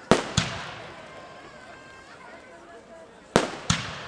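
Aerial firework shells bursting: two loud bangs in quick succession just after the start, and two more about three seconds later, each trailing off in a rolling echo.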